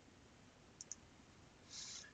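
Near silence: room tone, with two faint, short clicks close together about a second in and a soft breath near the end.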